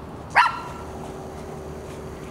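A dog barks once, a single short bark about half a second in.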